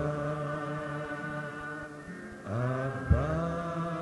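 Voices of a congregation singing a slow chant in long held notes. A new held chord enters about two and a half seconds in, and there is a brief knock just after.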